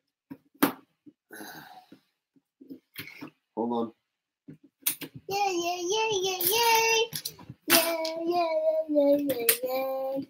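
A small child's high-pitched, wordless sing-song vocalizing in two long wavering phrases through the second half. Before it come a few scattered clicks and rustles of plastic LEGO bricks being handled, the sharpest under a second in.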